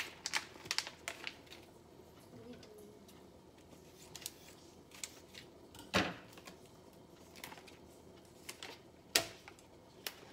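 Plastic food packaging crinkling and crackling as it is opened by hand, densest in the first second or so, then scattered small rustles and clicks. Two sharper knocks stand out, about six and nine seconds in.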